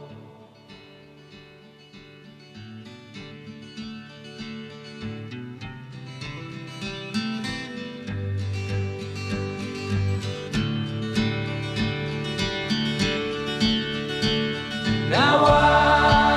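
Instrumental passage of a country-folk song: plucked acoustic guitar starts quietly and builds, with a bass line joining about a third of the way in. Harmony voices come back in near the end.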